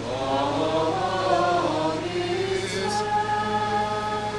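Voices singing liturgical chant, with long held notes that move in steps; a new phrase begins right at the start.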